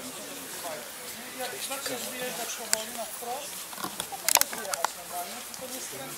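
Faint, low voices of several people talking in the background, with a few sharp clicks or knocks, the loudest a quick pair about four seconds in.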